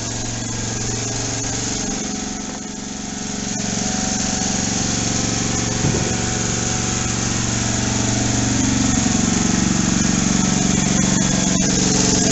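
A small engine running steadily, with a constant low hum, getting somewhat louder about four seconds in and again near the end.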